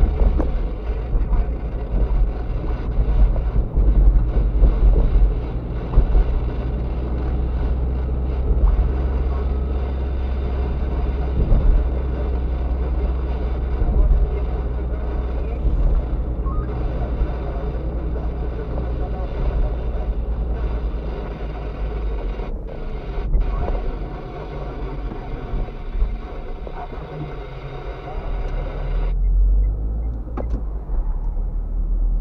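Car cabin noise while driving on a city street: a steady low rumble of engine and tyres with wind noise, easing somewhat near the end as the car slows behind traffic.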